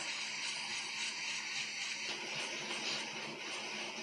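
Hot-air rework station blowing a steady airy hiss onto a laptop's heatsink to heat it, with a faint low hum underneath.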